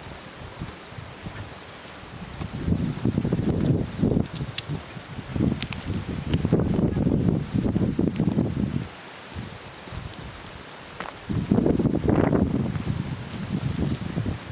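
Wind gusting on the camera microphone: irregular low buffeting that swells about two seconds in, drops off around nine seconds, and returns in another gust near the end, with light rustling in between.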